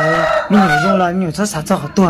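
A man talking: one voice in short phrases, pitch rising and falling.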